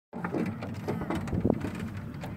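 Chair lift in motion: a low rumble with irregular mechanical clicks and rattles and wind on the microphone, with one sharper knock about one and a half seconds in.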